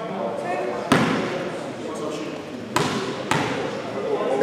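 A basketball bouncing on the wooden floor of a sports hall ahead of a free throw: one sharp bounce about a second in and two more close together near the end, each ringing in the hall's echo, over players' chatter.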